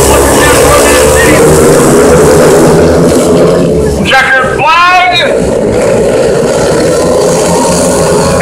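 Speedway motorcycles racing on a dirt oval, their 500 cc single-cylinder methanol engines running hard with the pitch wavering as the pack laps. A person shouts out loudly about four and a half seconds in.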